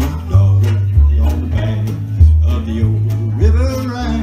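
Live acoustic country music: acoustic guitars strumming over a steady alternating bass line, with a fiddle playing along.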